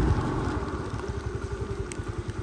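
Heavy rain falling as a steady noise, with a low fluttering rumble of wind buffeting the microphone.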